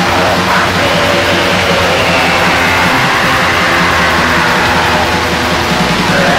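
Black metal played loud and dense on distorted electric guitars, bass and drums, with a long high line slowly falling through the middle.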